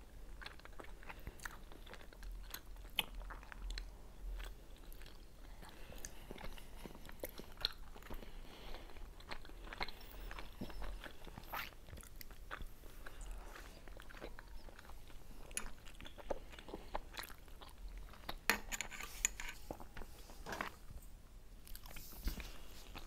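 Close-miked chewing and biting of soft pan-fried potato-and-mushroom dumplings with sour cream, by two people eating. Many small sharp mouth clicks run throughout.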